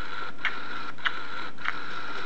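Baby Alive doll's battery-driven mechanism running as it feeds: a steady small-motor whir with a regular click about every 0.6 seconds.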